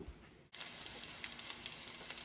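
Diced onions and garlic frying in olive oil in a hot pan: a steady crackling sizzle that starts suddenly about half a second in.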